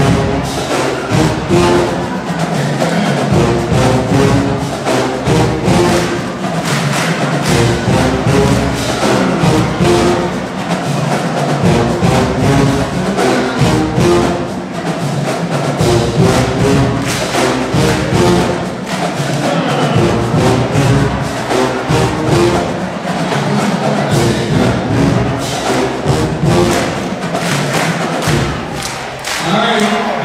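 Marching band playing an up-tempo tune at full volume: brass with sousaphones over a drumline beating a steady, driving rhythm. The music stops just before the end.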